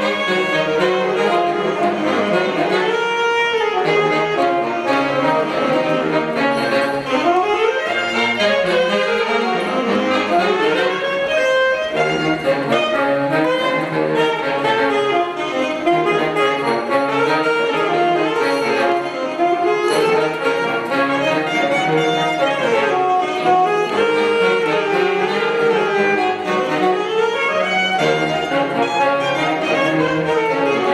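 Live instrumental music from a small ensemble of saxophones and brass, playing a continuous melodic piece without a break.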